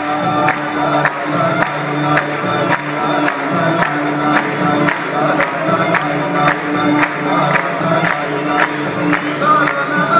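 Live Arabic orchestral song: strings and a male voice over a choir, with a steady beat of sharp percussive strikes about twice a second.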